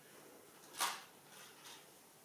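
Fingers scratching and rubbing through thick hair at the nape of the neck: one short, louder rustling scrape a little under a second in, then two fainter ones.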